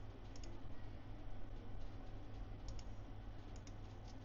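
A few light computer mouse clicks, mostly in quick pairs, about a third of a second in and again around three seconds in, over a low steady hum.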